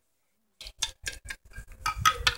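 Small plastic toy figurines being handled and set down on a hard tabletop, a quick run of light clicks and taps starting about half a second in.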